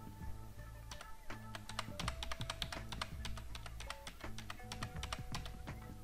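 Rapid, irregular clicking of a computer keyboard and mouse, over faint background music with a steady low bass.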